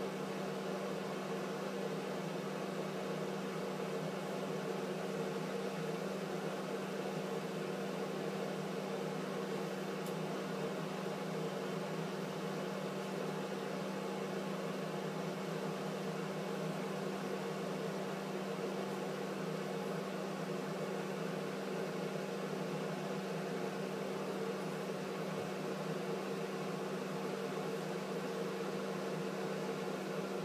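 Steady hum of a bathroom exhaust fan, a low drone with a fainter higher tone above it and an even airy hiss.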